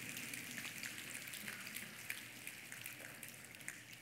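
An audience of many people snapping their fingers: a faint, scattered crackle of small clicks, like rain, that thins out towards the end.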